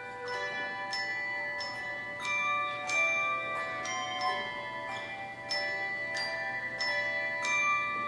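Handbell choir playing: bells struck one after another, each note ringing on and overlapping the next.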